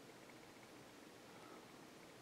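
Near silence: faint room tone and recording hiss.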